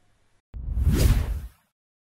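A whoosh transition sound effect for a channel logo sting. It begins with a small click about half a second in, swells into a rushing sweep with a deep rumble underneath, peaks about a second in, then cuts off half a second later.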